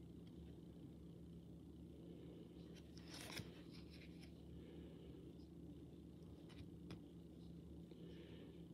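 Near silence: room tone with a steady low hum. There is a faint rustle about three seconds in and a couple of tiny clicks later, from a card in a hard plastic toploader being handled and turned over.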